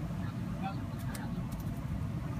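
Steady low background rumble, with a few faint sharp clicks and rustles in the second half from a male blackbird pecking and scratching in soil and leaf litter.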